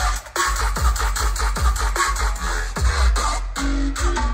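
Bass-heavy electronic dance music from a live DJ set, played loud over a festival PA and heard from within the crowd, with a steady run of deep kicks and a brief break in the beat just after the start.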